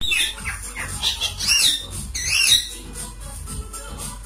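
Rose-ringed parakeet calls: a few high-pitched squawks that arch up and down in pitch, the two loudest about one and a half and two and a quarter seconds in.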